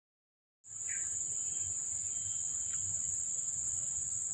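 Steady, high-pitched insect chorus, starting about half a second in and holding at an even level.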